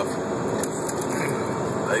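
Steady road and engine noise inside a semi truck's cab while driving.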